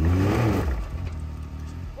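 Can-Am Maverick X3 XRS side-by-side's turbocharged three-cylinder engine revved in one short burst at the start, then easing back to a steady low running. The machine is hung up on the car it is perched on and does not drive off.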